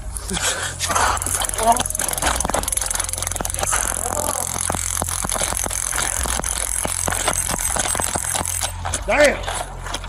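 Police body-camera audio during a struggle and a run: dense rustling and knocking of the officer's clothing and gear against the microphone, with brief voices about a second in and near the end, over background music.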